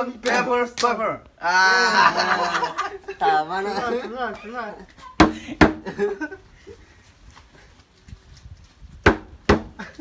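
Young men laughing for the first few seconds, then two pairs of sharp knocks, one pair about five seconds in and another about nine seconds in, as a green plastic container is whacked onto a losing player's head.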